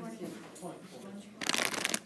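Classroom sound: low murmuring voices, then a short, loud rustling about a second and a half in that lasts about half a second.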